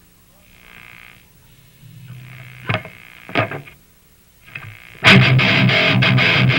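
Distorted electric guitar giving a few quiet swells and sharp scraped or plucked noises over a steady amplifier hum. About five seconds in, the full band comes in loud with distorted guitar.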